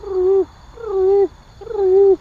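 A man's voice making three drawn-out, hooting notes in a row, each about half a second long and nearly a second apart, holding steady in pitch before dropping off at the end.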